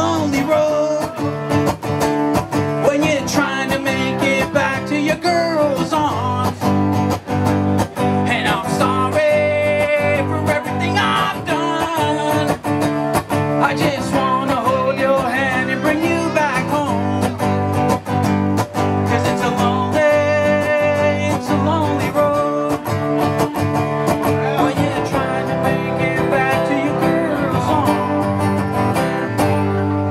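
Acoustic guitar strummed in a steady rhythm, with a singing voice coming in at times.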